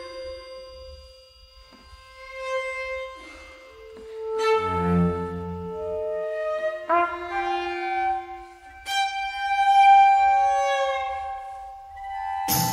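Contemporary chamber ensemble of bowed strings, winds and mallet percussion playing slow, long held notes that overlap and sustain. It starts very softly, then grows, with a few notes entering on sharp attacks about four and a half, seven and nine seconds in.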